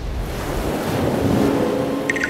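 Logo sound effect: a rushing, wave-like swell of noise, with a steady low tone joining it about a second in.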